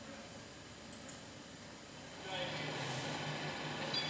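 Quiet room tone with a faint click about a second in. From just past the halfway point a faint, steady low hum rises: the opening of a recorded radio advert being played back through the room's loudspeaker.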